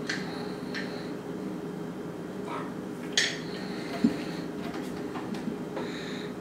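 Handheld plastic citrus squeezer being loaded with a lime half and handled: a few light clicks and knocks, the sharpest about three seconds in, over a steady low hum.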